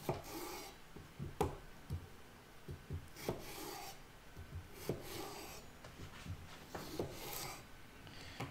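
Large chef's knife slicing cucumbers lengthwise on a wooden cutting board: a scraping stroke through the cucumber followed by a knock of the blade on the board, repeated about every one and a half to two seconds.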